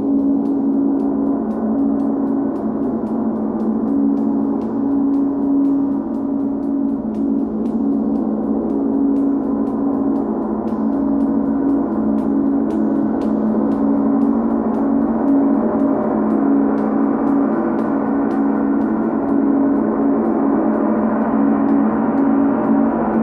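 A large Chau gong played continuously with soft mallets, building a sustained, shimmering wash of sound. A deep hum wavers and pulses underneath, and light repeated mallet strokes keep it going without a break.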